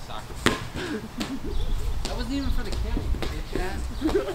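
A rubber dodgeball hitting a hard surface twice: a sharp smack about half a second in and a weaker one under a second later, with distant voices throughout.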